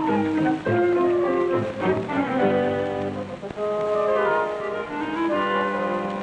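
Orchestral cartoon score with brass, playing a busy passage with several sliding notes, falling early on and rising later.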